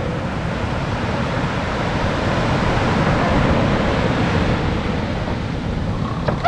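Steady rush of sea surf mixed with wind on the microphone, swelling slightly around the middle.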